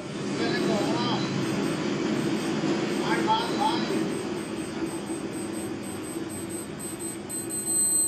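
Steady low rumble of idling vehicle engines, with a man's faint shouting twice from a distance.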